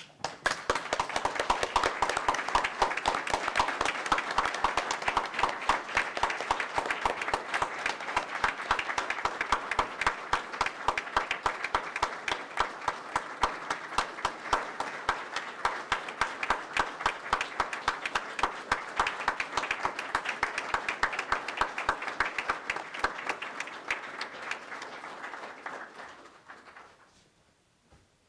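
A roomful of people applauding in a standing ovation, dense steady clapping that tapers off near the end. It is the vote by acclamation adopting the resolution.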